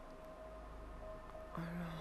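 Faint background music: a single steady held tone over low hum. A man's voice starts near the end.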